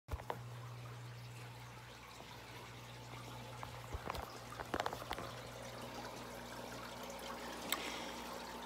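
Faint steady trickle of aquarium water with a low hum under it, and a few clicks and knocks from the phone being handled.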